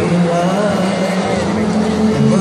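A cappella vocal quartet singing in harmony: a low bass voice holds steady notes beneath the wavering melody of the higher voices.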